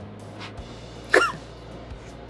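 A man's short, high-pitched vocal yelp about a second in, its pitch rising and falling, over quiet background music.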